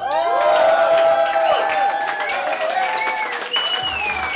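Concert crowd cheering right after a song ends, with long held whoops and shouts over scattered clapping; a higher whoop rises out of it a little before the end.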